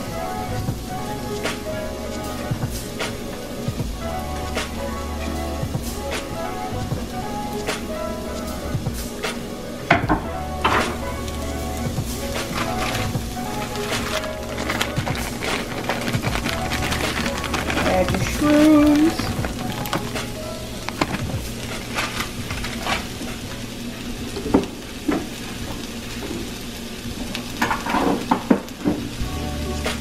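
Chopped onion and green beans sizzling in hot oil in a frying pan, stirred with a wooden spoon that scrapes and knocks against the pan, over background music.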